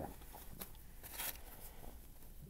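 Faint rustling of disposable surgical masks being handled and pulled over the face, with a couple of brief scratchy rustles, the louder one a little past a second in.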